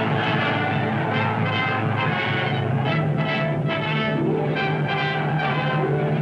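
Orchestral film score led by brass, with repeated, rhythmic note attacks growing more marked in the second half.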